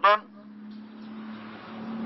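A road vehicle approaching, its noise swelling steadily louder over a steady low hum.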